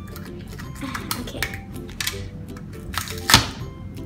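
Background music with the crinkling and rustling of a plastic wrapper being peeled off a toy ball, with a few small crackles and one louder crinkle near the end.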